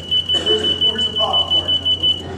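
A loud, high-pitched electronic beep tone that starts suddenly and pulses rapidly, about six times a second, like an alarm.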